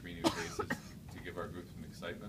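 A man coughs twice in quick succession, clearing his throat, about half a second apart near the start.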